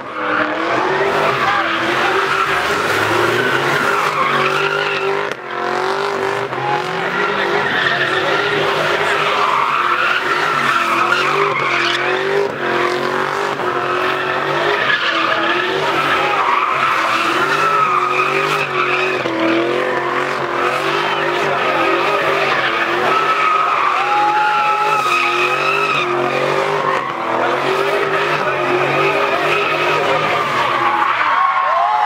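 A car doing donuts: its engine is held at high revs that waver up and down, under a continuous screech from the spinning tyres.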